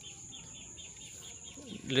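Faint chicken calls, a quick string of small high chirps several times a second, over a steady high hum.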